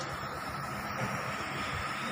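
A steady mechanical drone with a constant thin whine above it, like an engine or machine running nearby.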